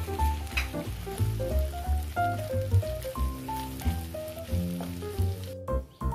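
Pastes frying in hot oil in a nonstick pan, sizzling steadily while a spatula stirs them, under background music with melodic notes and a bass beat. Both drop out briefly just before the end.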